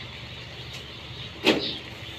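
A plastic chick crate set down on the floor with a sharp knock about one and a half seconds in, over a steady chorus of many day-old chicks peeping in their crates and a low hum.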